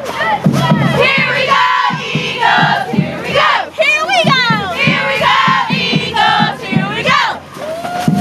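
A group of cheerleaders shouting and cheering while marching, many young voices overlapping, with a high swooping yell about halfway through.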